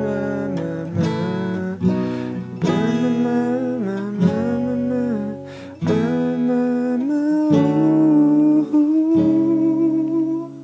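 Steel-string acoustic guitar with a capo, played in chords that change every second or so, with a voice carrying the melody over it in long wavering notes.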